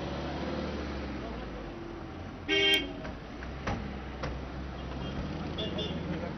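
Steady low rumble of SUV engines running, with one short car-horn honk about two and a half seconds in, the loudest sound here. A couple of faint clicks follow.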